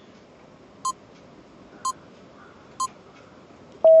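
Quiz countdown-timer sound effect: short sharp ticks about once a second, three in all. Near the end a loud steady beep starts, marking that the time is up.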